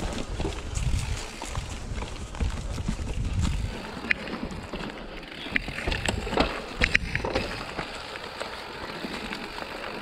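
Mountain bike rolling over rocky, rooty singletrack: tyres rumbling on dirt and roots, with the bike rattling and clicking over the rough ground. A low rumble fills the first few seconds, then a run of sharp clicks and knocks comes through the middle.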